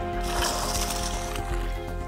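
Water and live finger mullet poured from a bucket into a pond, pouring and splashing for about a second, over steady background music.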